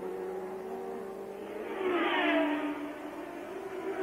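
Ford Cosworth DFV V8 of a 1982 Theodore Formula One car at racing speed. The engine note swells to its loudest about two seconds in as the car passes, then the pitch falls away.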